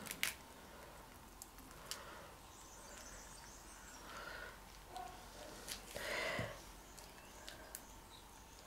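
Faint handling sounds of gloved hands pressing on the back of a stretched canvas set face down in wet acrylic paint on a plastic sheet: a few light clicks and soft rustles, with a slightly louder brief rustle about six seconds in.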